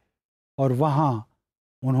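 A man's voice: a single short drawn-out vocal sound, under a second long, starting about half a second in, with dead silence before it.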